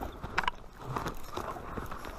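Footsteps crunching in snow, a few soft irregular steps.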